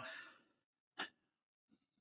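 Near silence in a pause between speech: a faint exhaled breath trails off at the start, and a single short click sounds about a second in.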